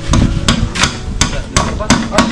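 Hammer striking a bamboo fence rail at a wooden post: six sharp, evenly spaced blows, about three a second.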